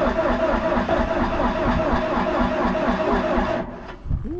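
Diesel engine of a piece of heavy construction equipment running just after a cold start, white smoke pouring from its exhaust stack; the sound fades away near the end.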